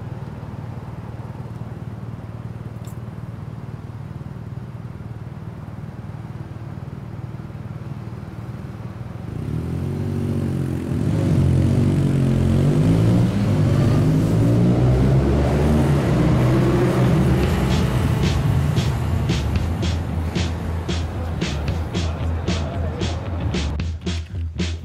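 Car and motorcycle engines idle at a low steady hum, then rev hard about ten seconds in, several at once, in overlapping rising and falling sweeps. Dramatic film-score music runs under them, and its ticking beat comes faster toward the end.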